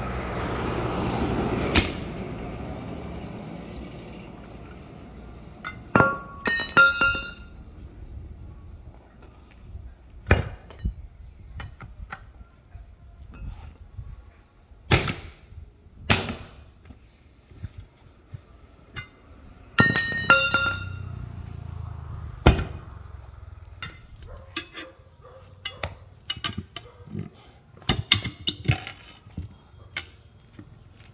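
Irregular metal knocks and clinks while a tyre bead is broken off a steel wheel rim: a sledgehammer striking the tyre and rim, and steel tyre levers and a pipe clanking against the rim as they pry, several strikes ringing briefly. A rush of noise swells and fades over the first two seconds.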